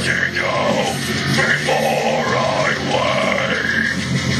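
Harsh guttural deathcore vocals, growled into a handheld microphone over a loud heavy metal backing track with distorted guitars.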